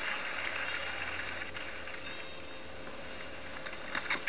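Steady crowd noise from the spectators at a cricket ground, easing a little after the first second or so.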